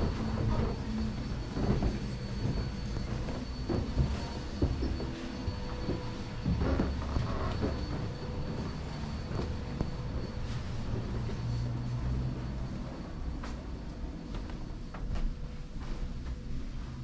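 Low rumbling handling noise from a hand-carried camera, with scattered muffled footfalls and knocks as people climb carpeted wooden stairs. A faint steady high whine runs underneath.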